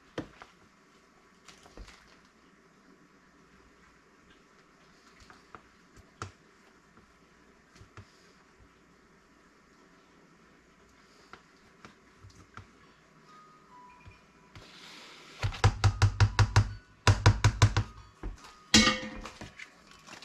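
A wooden spoon tapping and scraping quietly in a plastic food container. Later it gives way to a loud run of rapid hollow knocks, about six a second, for roughly three seconds, with one more short knock burst just after.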